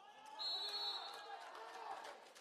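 A referee's whistle gives one short, steady, high blast about half a second in, calling a foul. Around it there is indoor hall noise of a handball bouncing and players' voices.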